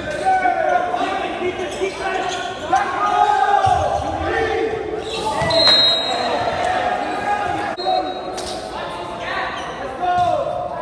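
Players and onlookers shouting and calling during a volleyball rally in a gymnasium, with a few sharp smacks of the ball being hit. The hall gives everything a strong echo.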